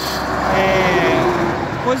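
A road vehicle passing close by, its tyre and engine noise swelling and then fading over about two seconds.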